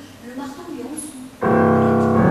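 Grand piano chord struck loudly about one and a half seconds in and left ringing.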